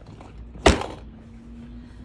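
A single hollow thunk about halfway through as a clear plastic compartment organiser box filled with small clay pieces is set down on a table.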